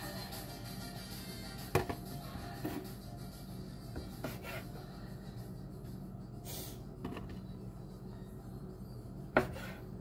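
Food handling and knife cutting on a plastic cutting board: a few scattered sharp knocks, the loudest near the end, over faint background music.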